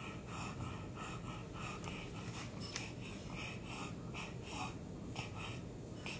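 French bulldog panting with its tongue out: quick, regular breaths, about three a second.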